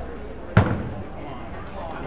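A bowling ball landing on the lane as it is released: one sharp thud about half a second in, over the murmur of the bowling alley.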